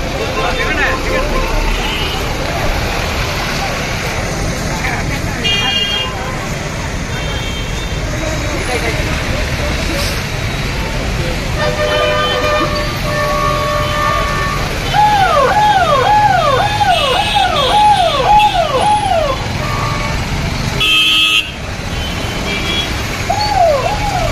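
A police SUV's siren sounding a fast, repeating wail: about seven quick swoops over some four seconds a little past the middle, the loudest part, and starting again near the end. Before it, car horns honk steadily for a couple of seconds, and a crowd chants "down, down" and shouts throughout.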